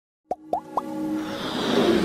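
Logo-intro sound effects: three quick pops, each sweeping upward in pitch and each starting a little higher than the last, then a whoosh that swells over held synth notes.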